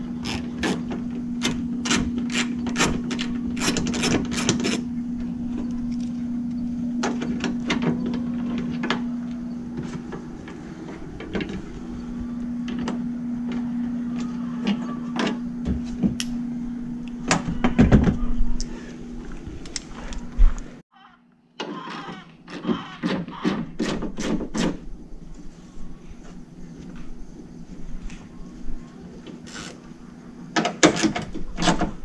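Plastic clips and trim pieces around a pickup's headlight being worked loose by hand: many scattered clicks, snaps and knocks. A steady low hum runs under the first two-thirds, and the sound drops out briefly about two-thirds of the way in before more clicking and handling.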